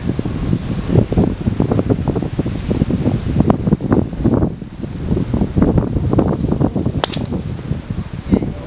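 Wind buffeting the microphone in gusts, then one sharp crack about seven seconds in as a driver strikes a golf ball off the tee.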